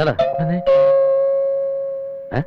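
Doorbell chime ringing two notes, a short higher one and then a lower one that rings on and slowly fades, with a brief voice over the first note.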